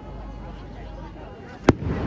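A firework shell bursting with a single sharp bang near the end, a low rumble trailing after it.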